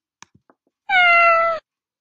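A single cat meow, under a second long and falling slightly in pitch, preceded by a few faint clicks.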